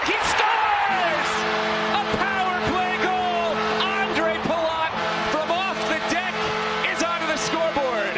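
Arena goal horn blaring in long held tones from about a second in, over a loud roaring crowd cheering a home-team goal.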